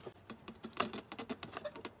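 Quick, irregular small clicks and scrapes of plastic on plastic as a rice cooker's power socket is worked out of the snap-fit clips in its plastic base cover.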